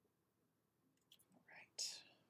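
Near silence, then in the last second a few faint mouth clicks and a short breathy sound, like a quick breath or a barely voiced whisper.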